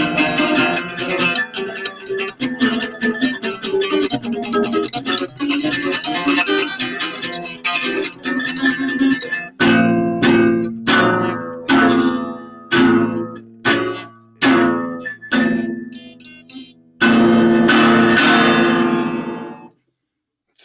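Acoustic guitar strummed with no singing: quick, steady strumming, then chords struck one at a time under a second apart, and a closing chord left to ring until it fades out.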